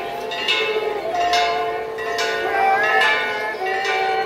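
Church bells ringing, struck about once a second, each stroke leaving a long ring. Held, slowly wavering tones sound beneath them.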